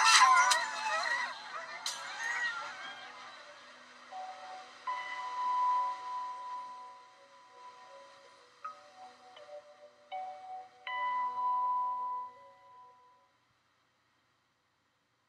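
Several sled dogs howling together, their pitches gliding up and down, for the first two seconds or so. Soft music of long, held chiming notes follows and fades out shortly before the end.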